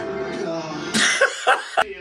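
A voice over background music, then a few short, loud vocal bursts about a second in, cut off abruptly just before the end.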